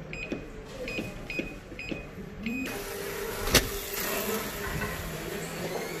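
Five short electronic beeps at uneven intervals, the tones of keys pressed on a door keypad. The door then opens onto a steady corridor hum, with one sharp click of the door or latch about three and a half seconds in.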